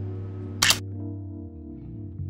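Background music with held low notes, and a single loud camera shutter click about half a second in.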